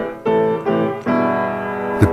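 Piano playing a slow melody with three notes struck in turn, each left ringing. The music is a setting of the human DNA sequence.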